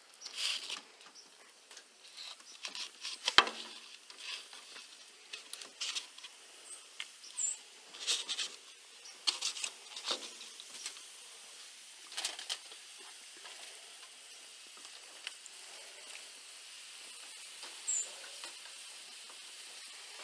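Irregular crinkles and soft knocks as sausage-wrapped balls are set down one by one on aluminium foil lining a gas grill, with one sharp knock about three and a half seconds in. The handling noises thin out in the second half, leaving a faint steady hiss.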